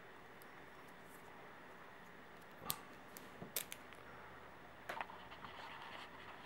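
Quiet room tone with a few faint, scattered clicks and taps, about four or five in all, spread across the second half.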